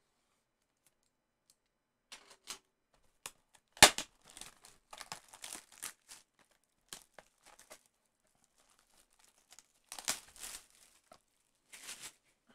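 Plastic shrink wrap being slit and torn off a cardboard trading-card box, crinkling in irregular bursts, with one sharp snap about four seconds in.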